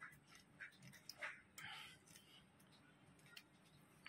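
Near silence, with a few faint clicks and short soft noises in the first two seconds from a Pfizer-type tablet hardness tester as its handle is squeezed to crush a tablet.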